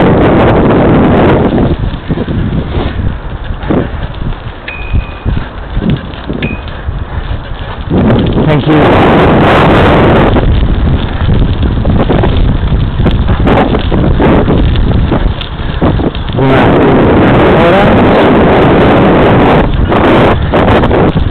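Wind buffeting the microphone of a fast-moving camera, a loud rushing noise that eases for several seconds about two seconds in and picks up again about eight seconds in. Two short high tones sound briefly near the middle.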